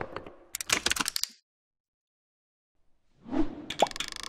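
Motion-graphics intro sound effects: a quick run of sharp clicks, a second and a half of silence, then a whoosh and a short pop near the end.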